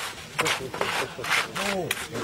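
Steel hand trowel scraping across wet concrete in several short strokes as it smooths and levels the surface.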